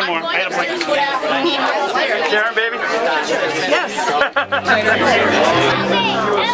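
Several people talking at once, a chatter of overlapping voices. About four seconds in, after a brief break, music with steady low sustained notes comes in under the talk.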